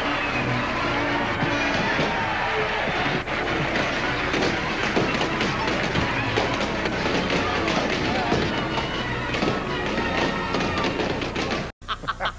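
Studio audience cheering and clapping over music, with a crowd of voices mixed in. The sound breaks off abruptly shortly before the end.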